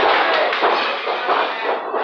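A few dull thuds from wrestlers' bodies and feet striking a wrestling ring's canvas, mostly in the first second, over crowd voices.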